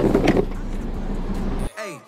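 Steady low hum of a nearby car with open-air background noise, and a sharp knock right at the start. The sound cuts off abruptly shortly before the end.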